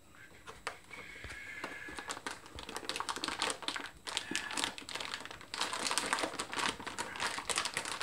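Metallized anti-static bag crinkling as hands work a graphics card out of its foam packing: a dense run of small crackles that starts about a second in, eases briefly near the middle and is busiest near the end.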